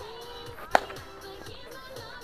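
A bat striking a pitched ball once: a single sharp crack with a brief ringing tail, less than halfway in, over background music.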